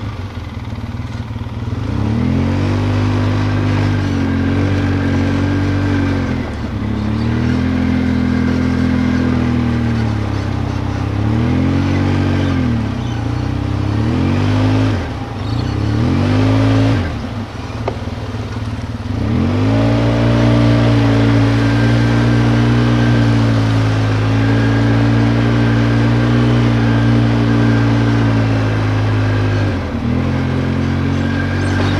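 ATV engine running as the machine rides along, its pitch rising and falling with the throttle. About halfway through it speeds up and drops back several times in quick succession, then runs steadily for the last third.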